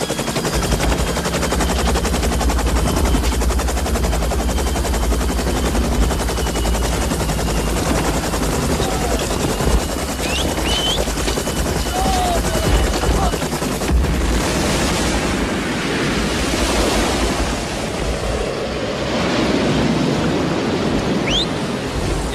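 Sustained, dense automatic gunfire from a war-film battle soundtrack, continuous and loud, over a steady low rumble.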